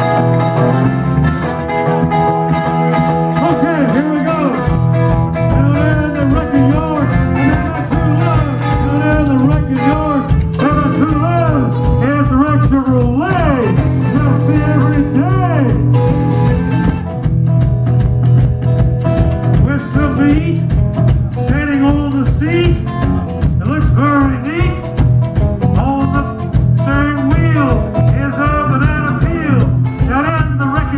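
Live band playing a slow blues: electric guitar, with bass and drums coming in about four seconds in, and a harmonica cupped against a hand-held microphone playing bent, wavering notes over the top.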